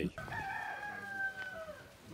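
A rooster crowing: one long held crow that drops in pitch at the end.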